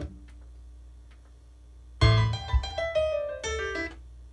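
Piano-style keyboard playing a short phrase of notes, starting suddenly about halfway through and stepping down in pitch, used to show how the melody goes.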